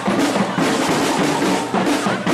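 Marching band playing, its bass and snare drums beating a steady rhythm of about four strokes a second under pitched instrument parts.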